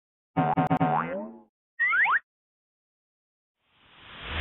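Cartoon-style logo sound effects: a twangy boing tone that stutters several times and then bends upward, followed by two quick rising whistle-like slides. Near the end a whoosh begins to swell.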